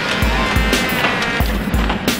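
Closing ident music with deep bass thumps, two pairs of them, under a sustained synth tone.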